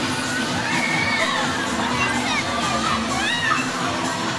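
Riders on a spinning Twist fairground ride screaming and shouting, many short rising-and-falling shrieks, over a steady background din.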